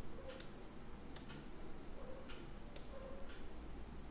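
A few faint, irregular computer-mouse clicks over low room noise.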